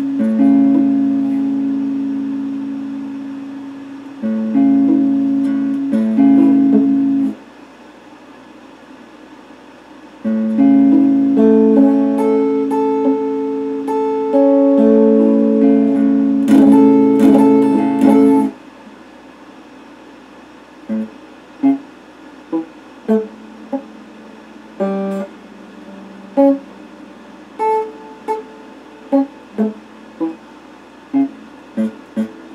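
Electric guitar played slowly: chords held and left to ring for a few seconds at a time, with a pause of about three seconds, then, from about twenty seconds in, short single notes picked roughly once a second.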